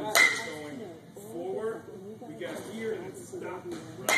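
Baseball bat hitting a ball off a batting tee: one sharp crack just after the start, with a brief ring, the loudest sound here.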